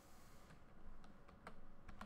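Faint typing on a computer keyboard: a few scattered keystrokes over low room hiss.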